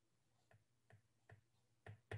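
Faint taps of a stylus on a tablet screen during handwriting: four light clicks a little under half a second apart, the last one, near the end, the loudest.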